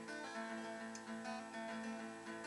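Acoustic guitar being strummed, its chords ringing steadily with no singing over them.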